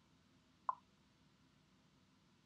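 Near silence, broken once by a single very short, soft pop about two-thirds of a second in.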